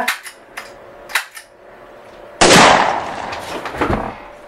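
A single revolver gunshot goes off suddenly a little past halfway, loud and dying away over about a second and a half, after a short click about a second in.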